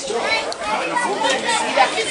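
Background chatter: several people talking at once, their voices overlapping without one standing out.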